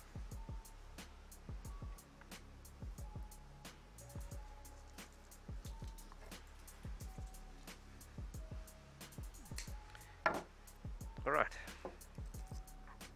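Background music with a steady drum beat and short held notes. A brief louder sound comes about ten seconds in.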